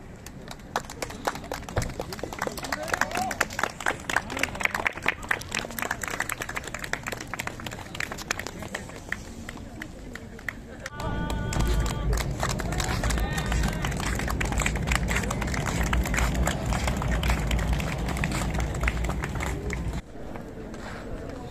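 Outdoor street sound with people's voices and many sharp clicks through the first half; about eleven seconds in, a loud steady low rumble comes in and stays.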